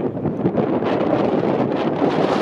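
Wind buffeting the microphone, a steady, rumbling noise with a few brief louder gusts.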